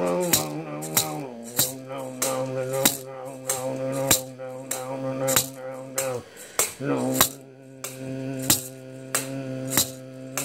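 Music: a rattle or shaker struck in a steady pulse, a hit about every 0.6 s, over a held droning tone that breaks off briefly a little after six seconds in and comes back with a rising slide.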